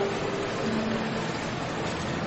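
A steady hiss, with faint notes of background music underneath.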